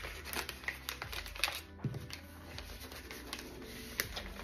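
Paper sheets rustling and sliding into a clear plastic page sleeve, with faint crinkles and small irregular taps.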